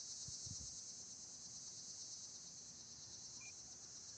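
Faint, steady high-pitched chorus of insects singing in the summer fields, with a couple of soft low thumps about half a second in and a single short chirp near the end.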